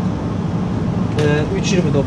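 Steady low hum of a supermarket's refrigerated display cases and ventilation, with a short stretch of voice in the second half.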